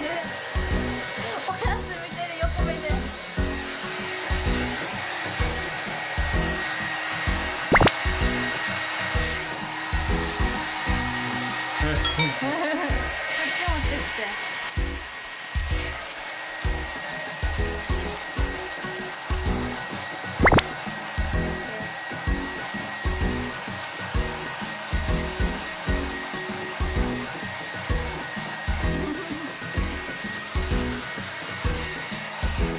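Hair dryer blowing steadily with a faint high whine as a freshly bathed French bulldog is dried, over background music with a steady beat.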